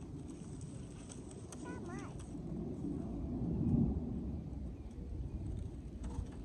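A small child's brief high-pitched vocal sounds about two seconds in, over a low, uneven rumble that swells a little before the four-second mark.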